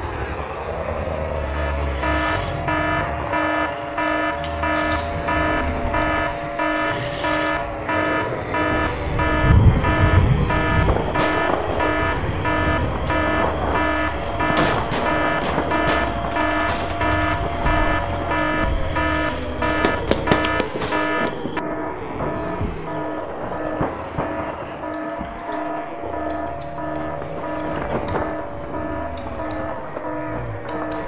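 Film score: repeating pulsed synth tones over a low rumble, with a slow wailing tone that rises and falls every few seconds and scattered sharp hits. A loud low boom comes about ten seconds in.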